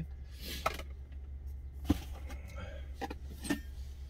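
A few short clicks and knocks as a stainless steel bowl and a plastic lidded food container are handled, over a steady low hum.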